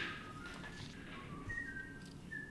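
A person quietly whistling a tune: a string of clear single notes stepping up and down in pitch, with a short click at the very start.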